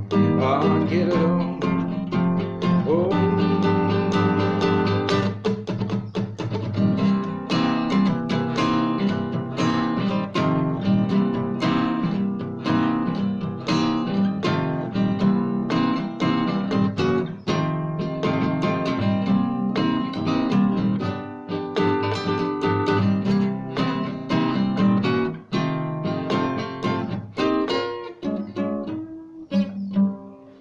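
Solo acoustic guitar playing an instrumental passage of a rock song, with quick runs of picked notes mixed with strums. The playing thins out and rings away near the end.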